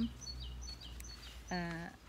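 A small songbird chirping: a quick series of short high notes, several of them dropping in pitch.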